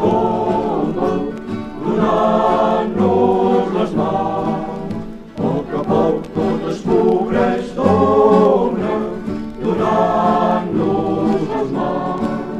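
A group of young voices singing a folk song together in chorus, in held phrases of about a second or more with short breaths between them.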